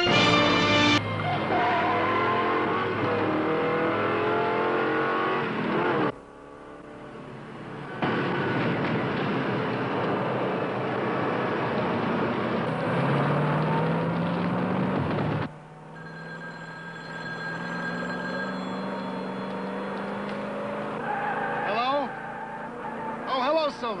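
A car being driven hard: dense engine and road noise, with the engine note rising as it accelerates a little past halfway, then dropping to a quieter, steadier run. A short stretch of theme music ends about a second in.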